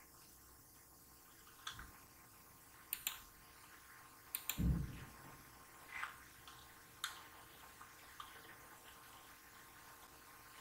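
Faint, irregular small clicks, about seven of them spread over the stretch, and one dull thump near the middle, over a steady low electrical hum in a quiet room.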